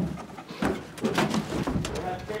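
Papers and desk objects being grabbed and shuffled: irregular rustling and light knocks, several in quick succession from about half a second in.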